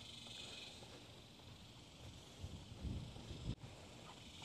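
Quiet outdoor background: a faint steady high hiss, with a few soft low thumps from about two and a half seconds in and a single sharp click shortly before the end.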